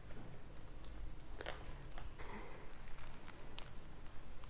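Cempadak core with its fruit bulbs attached, pulled by hand out of the split rind: faint soft tearing and handling with a few light clicks, the clearest about a second and a half in.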